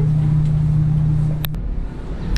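A loud, steady low hum from a machine in a small room, cut off by a click about one and a half seconds in. Then a low outdoor rumble follows.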